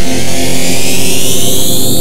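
DIN Is Noise software synthesizer playing a sustained multi-tone texture: steady low partials hold while a fan of higher partials glides smoothly and steadily upward.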